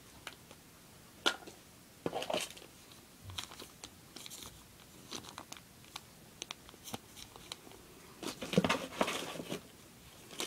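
Small clear plastic bags being handled, crinkling and rustling in irregular short bursts with scattered sharp clicks, and a longer, louder spell of crinkling near the end.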